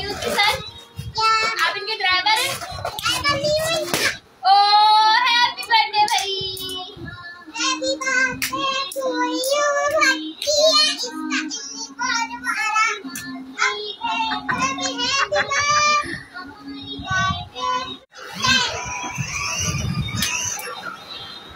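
A children's song: a child's singing voice over music, with wavering sung lines and a run of short, steady low notes in the middle.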